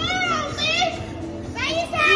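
Women laughing and squealing in two high-pitched bursts, one at the start and one near the end, with music playing underneath.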